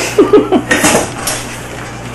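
A quick run of four or five metallic knocks and clatters in the first second, then quieter.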